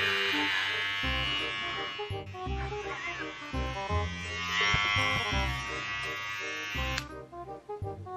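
Electric hair clippers buzzing against a head of hair as it is cut, over background music with a steady beat. The buzz stops suddenly near the end, and the music carries on.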